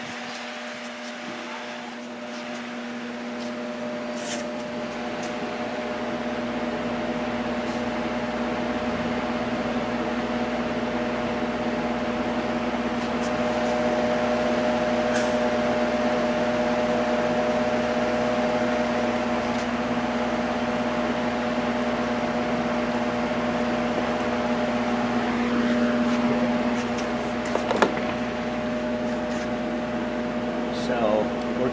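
Steady machine hum at a constant pitch, like a running fan or small electric motor. It grows louder over the first dozen seconds and then holds. A few faint clicks and one sharper click come near the end.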